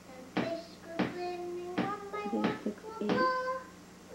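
A young girl singing a children's song in short phrases, with several notes held steady. A faint steady hum runs underneath.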